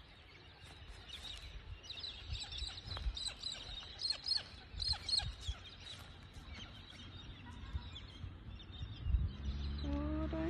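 Many birds chirping and calling in quick, short, high notes, busiest in the first half and thinning out later.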